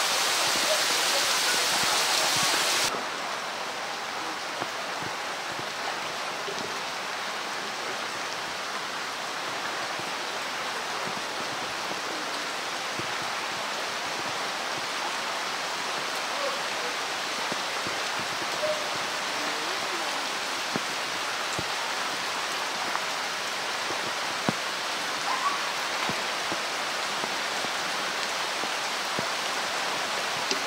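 Heavy rain falling on the water of a pool, a steady hiss. It drops a step in level about three seconds in, and a few faint ticks of drops stand out later on.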